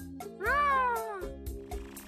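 A single meow-like wordless call that rises and then falls in pitch over about a second, heard over soft background music.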